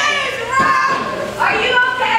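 Children in the crowd shouting and yelling, several high-pitched shouts one after another.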